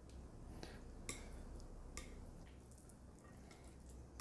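Faint clicks and taps of chopsticks against a plate as saucy instant noodles are picked up and lifted, a few light ticks spread through the quiet.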